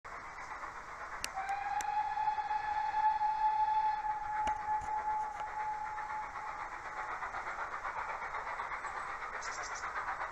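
Steam locomotive whistle blowing one long steady blast of about five seconds, over the rhythmic running sound of a train.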